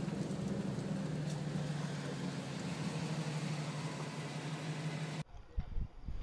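A car engine idling, heard from inside the car as a steady low hum. A little after five seconds it cuts off abruptly, followed by a few soft low bumps.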